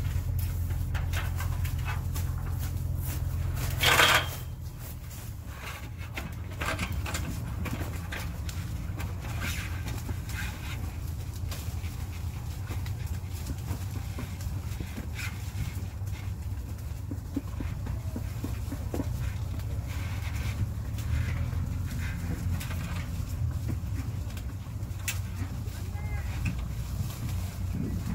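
Apple tree leaves and branches rustling with scattered light snaps and clicks as apples are picked by hand from a ladder, over a steady low rumble. A short, louder burst of noise about four seconds in.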